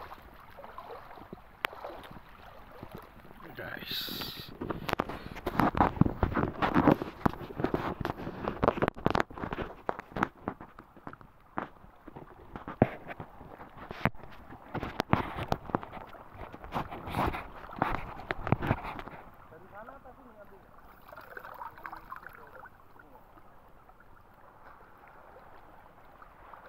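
Shallow seawater splashing and sloshing in uneven strokes as someone wades across a rocky reef flat, busiest from a few seconds in until near the three-quarter mark, then settling to a soft wash.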